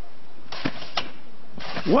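A few short sharp knocks, two of them about a third of a second apart, over a steady background hiss.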